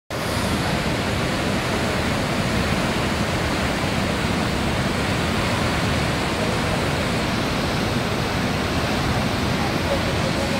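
Cumberland Falls, a broad waterfall on the Cumberland River, pouring over its ledge: a steady, even rush of falling water that fills the whole sound, with no rise or fall.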